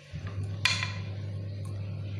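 A single sharp clink of kitchenware, a dish or utensil knocking, ringing briefly, over a steady low hum.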